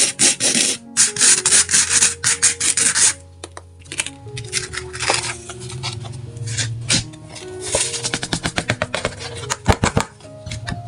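A plastic spoon rubbing and scraping coloured sand across a sticky sand-art board in quick strokes for about three seconds. After that it is quieter: small clicks and, near the end, a fast run of ticks as the board is tilted and the loose sand slides off, over soft background music.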